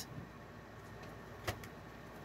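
Quiet room tone with a faint steady hum, broken by one short click about one and a half seconds in.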